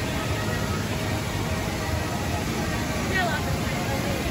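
Steady outdoor amusement-park ambience: a low, even rumble of background noise with faint distant voices, one brief snatch of voice about three seconds in.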